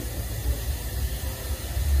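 Steady low rumble with a faint even hiss of workshop background noise; no distinct tool strikes or clicks.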